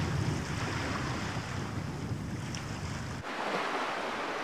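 Wind rumbling on the microphone, then, after an abrupt change about three seconds in, small waves washing over a rocky shoreline.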